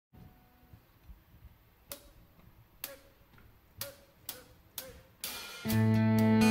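Five sharp taps counting in the band, the first two about a second apart and the last three quicker, over quiet room tone. Near the end a short swell leads into the ensemble entering together on a loud sustained chord.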